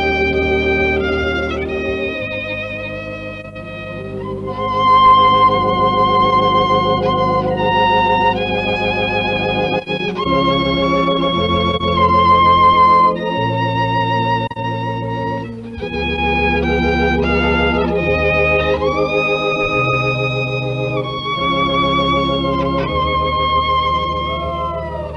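Violin and organ duet playing a hymn: the violin holds long notes with vibrato over sustained organ chords.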